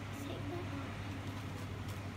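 Quiet room tone with a steady low hum and a faint child's voice murmuring briefly, once near the start and again near the end.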